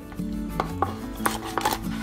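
Kitchen knife cutting through a raw chicken at the leg joint on a plastic cutting board: a handful of sharp clicks and knocks of the blade in the meat and joint and against the board.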